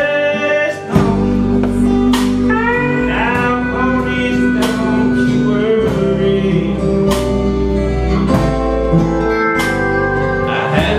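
Live country song: a man singing over a strummed acoustic guitar, with a steel guitar playing sliding, held notes.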